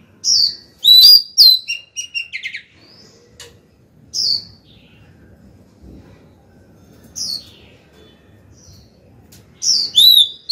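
Female oriental magpie-robin singing: a quick run of loud, clear whistles and chirps in the first two and a half seconds, then single short notes every few seconds, and another burst just before the end. This is a female's song to call a male, used by keepers to stir a newly caught wild bird.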